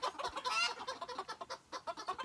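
Old English bantam chickens calling and clucking, the loudest call about half a second in.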